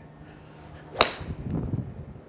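A golf club swung and striking a ball off the turf, heard as a single sharp crack about a second in. It is a solid strike, ball first and then turf, with the low point of the swing about two and a half inches ahead of the ball.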